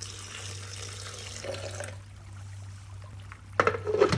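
Water pouring from a jug into a plastic blender jar onto chopped celery for about two seconds. Near the end come two loud plastic clacks as the blender lid is set on the jar. A steady low hum runs underneath.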